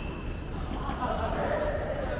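Tennis ball struck by rackets during a fast doubles exchange at the net in a large indoor court hall, with a player's voice calling out in the second half.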